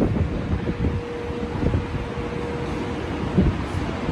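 Low, gusty rumble of wind buffeting the microphone, with a steady mid-pitched hum running underneath.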